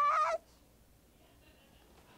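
A high voice from the cartoon soundtrack ends a drawn-out, rising 'What', cutting off about a third of a second in, then near silence.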